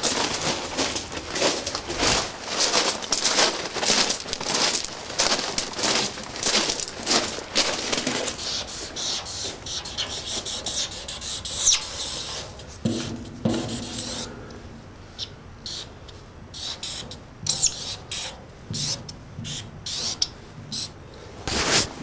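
Quick crunching steps on rail ballast, then a marker rubbing across the steel side of a freight car in short, scratchy strokes as a tag is written.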